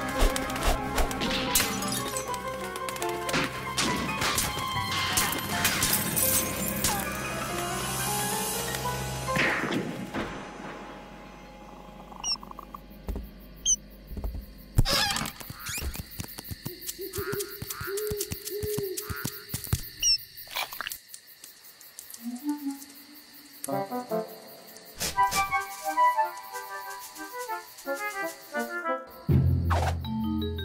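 Cartoon soundtrack music with sharp hits. It is busy and dense, with many strikes, for about the first ten seconds, then thins out to short plucked notes and scattered knocks.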